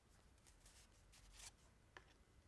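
Near silence: room tone with faint rustles of stiff paper flashcards being handled and swapped, the loudest about a second and a half in, and a small click near the end.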